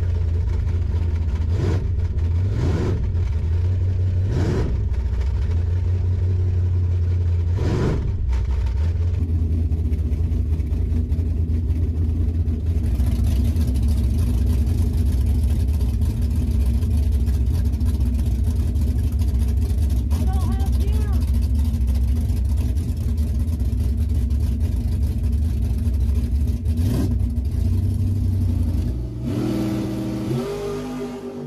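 Drag-race Camaro engine idling with a heavy low rumble, blipped four times in quick rising revs during the first eight seconds, then running steadily with one more short blip near the end.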